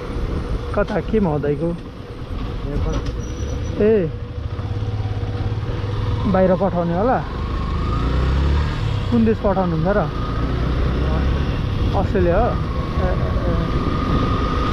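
Motorcycle engine running steadily under way, a low rumble mixed with wind and road noise as heard from the rider's seat.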